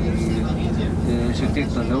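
Steady rumble of dense city road traffic, cars and taxis running, with people's voices talking over it.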